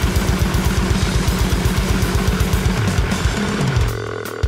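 Metal band recording: distorted electric guitar over very fast kick-drum strokes. Near the end the low notes step down as the riff closes.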